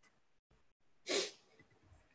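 A single short, sharp breath sound from a man close to the microphone, about a second in: a quick puff of air through the nose or mouth.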